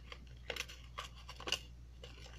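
Several short clicks and scratches of fingers working at a small box, spread over two seconds.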